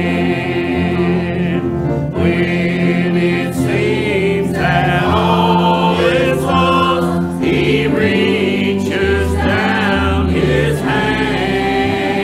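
Church choir singing a gospel hymn, holding long chords.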